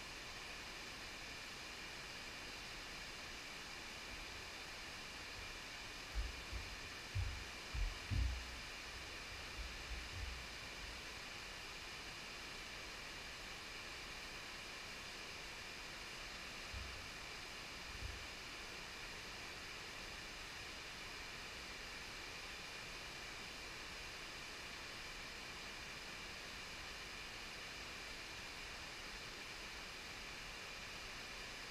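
Creek rapids rushing in a steady, even hiss. A few brief low thumps stand out between about six and ten seconds in, and twice more a little later.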